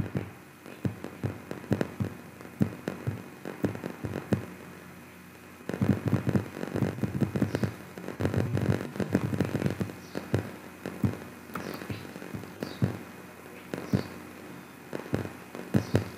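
Rapid clicks and taps from working a computer's input controls while scrolling and selecting, irregular at first, then a dense run about six to nine and a half seconds in, and sparser clicks after.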